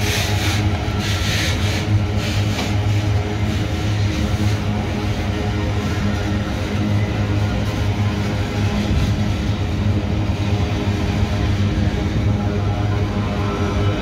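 Loaded freight wagons rolling past close by: a steady heavy rumble of steel wheels on rail, with a few louder bursts of wheel clatter in the first few seconds.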